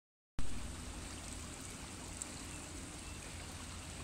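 River water rushing steadily over a shallow rocky riffle, with a deep rumble underneath; it starts abruptly a moment in.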